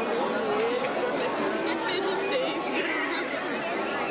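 Crowd chatter: many people talking at once, a steady blur of overlapping voices with no single speaker clear.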